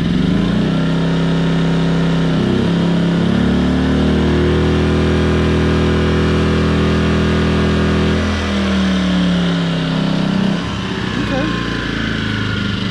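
Firman W2000i inverter generator's single-cylinder four-stroke engine revving up in steps as a 1500 W heater load hits it, holding a steady higher speed without overloading, then winding back down near the end.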